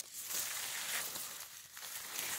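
Squash leaves and dry grass rustling and crinkling as a hand parts the vines, after a short sharp click at the start.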